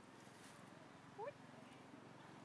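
A baby monkey gives one short rising squeak about a second in, over faint background hiss.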